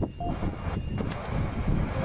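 Steady low rumble of wind buffeting the microphone outdoors.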